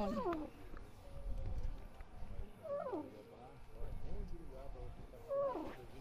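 Faint animal cries, three times a few seconds apart, each a drawn-out call that slides up and then down in pitch.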